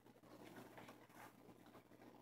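Near silence: faint rustling of paper journal pages being handled and turned, over a steady low hum.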